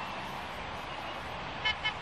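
Steady distant city traffic noise, with two quick car-horn toots near the end.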